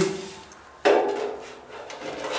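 A steel drywall profile knocking and scraping against the metal U-track as it is fitted into the top of the frame: a sudden metallic clank about a second in with a short ring that fades.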